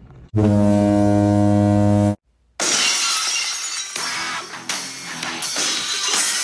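A low, steady buzzer-like horn sounds for under two seconds and cuts off. After a brief silence, a loud glass-shattering crash opens a wrestling-style rock entrance theme, which carries on with guitar and drums.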